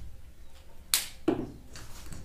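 A sharp knock about a second in, followed by a short swish that falls in pitch.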